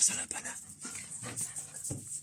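A dog whimpering and panting close by, in short irregular bursts, with clothing rubbing against the microphone.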